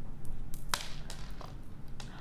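A few brief clicks and swishes as gemstone bead bracelets are handled and slid on a wrist, the sharpest under a second in and a fainter one later.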